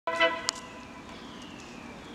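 A train horn gives one short toot right at the start, followed by a sharp click about half a second in. A steady mechanical background with a faint, slowly falling whine follows.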